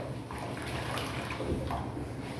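Kitchen tap running water onto a sponge being rinsed over a stainless steel sink, a fairly steady splashing.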